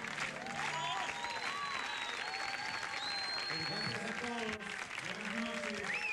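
Live concert audience applauding and cheering at the end of a song, with voices shouting over the clapping and a long high whistle about a second in.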